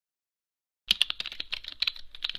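Rapid computer-keyboard typing, a quick run of key clicks at about a dozen a second, starting a little under a second in after silence.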